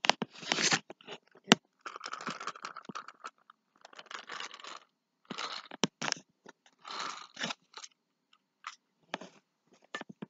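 Paper towels laid out as toy snow crinkling and scraping in irregular bursts, about six times, with a few sharp clicks between them.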